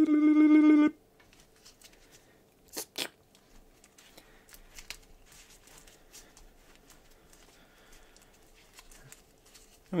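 A person's voice holds one steady hummed note for about a second. Two light knocks follow about three seconds in. After that comes a faint, irregular squishing and rubbing of gloved fingertips kneading a chunk of two-part epoxy putty, wetted with water.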